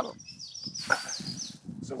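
A bird singing: a rapid run of high, thin notes lasting about a second and a half, after a brief laugh.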